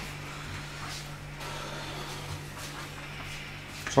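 Faint, steady hiss of a gas hob burner heating a pan of oil, with a low steady hum underneath.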